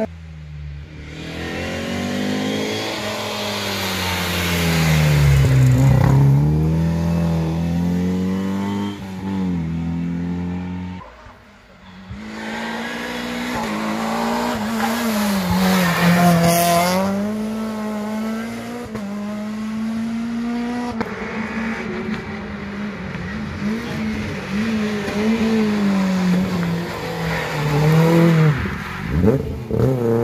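Rally car engines revving hard, the pitch climbing and dropping again and again through gear changes and lifts for corners. The sound drops away briefly about eleven seconds in, then another car's engine takes over.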